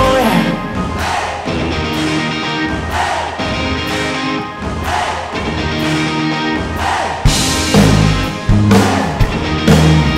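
Live band music in an instrumental passage without vocals: held chords over a beat about once a second, with the low end and hits growing louder about seven seconds in.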